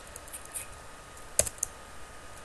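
A handful of keystrokes on a computer keyboard, scattered clicks with the sharpest one about one and a half seconds in.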